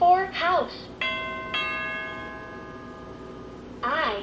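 A VTech Touch & Learn Activity Desk Deluxe toy plays a two-note electronic bell chime through its small speaker, the second note half a second after the first, both ringing out and fading over about two seconds. The toy's recorded voice speaks briefly before the chime and again near the end.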